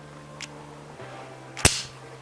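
A single sharp snap about one and a half seconds in: the two halves of a magnetic fly fob, a metal plate and a rubber-coated magnet base, clacking together under a strong magnetic pull.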